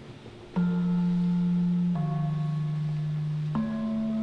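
Javanese slenthem, a low bronze-keyed gamelan metallophone, struck three times, each note ringing on until the next: a middle note, then a lower one, then a higher one.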